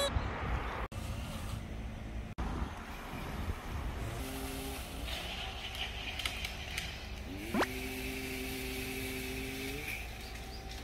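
Outdoor background noise: a steady rush with a low rumble, broken by a couple of abrupt cuts. A steady two-note hum comes in about four seconds in and again later, with a quick rising whine near the end.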